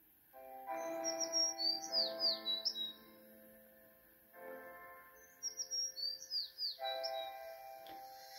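Instrumental backing-track intro of sustained keyboard-like chords with birdsong chirps layered in. Two runs of quick falling chirps repeat, one near the start and one after about five seconds, over held chords that pause briefly around the middle.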